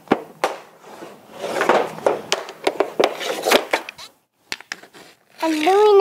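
Youth hockey stick blade clacking against a puck and scraping on a concrete floor in irregular taps while stickhandling. A small child's voice starts near the end.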